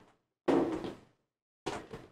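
A sudden knock-like thud about half a second in that dies away within half a second, and a shorter, softer one near the end.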